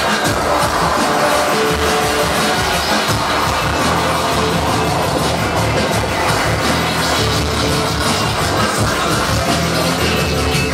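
Live hip-hop music with a steady beat, a DJ scratching and cutting vinyl records on two turntables over it.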